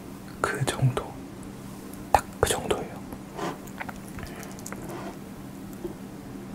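Close-miked chewing mouth sounds: scattered wet clicks and smacks, with a brief murmur of voice about half a second in.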